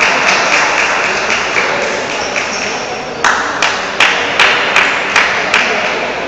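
Celluloid table tennis ball clicking on the table and bats, a quick even run of about two or three clicks a second that is sharpest in the second half, over a steady hiss of hall noise.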